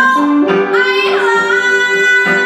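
A woman singing with electric guitar accompaniment, holding one long steady note from about a second in.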